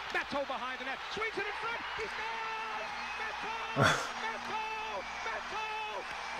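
Ice hockey TV broadcast: a play-by-play commentator calls the action over the game sound, with a single sharp knock about four seconds in.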